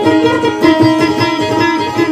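Acoustic guitar playing an instrumental passage of Maranao dayunday music, with quick plucked notes over a repeated melody line.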